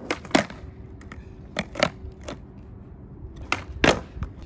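Skateboard on concrete: sharp clacks of the board hitting the ground, coming in pairs about a quarter second apart three times, the loudest about a third of a second in, over the low rumble of the wheels rolling.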